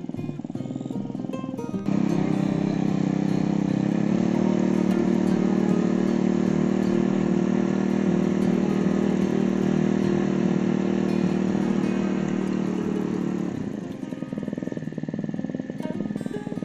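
Small petrol engine of a red mini tiller comes up to working speed suddenly about two seconds in and runs steadily under load while tilling dry, hard soil, then drops back near the end.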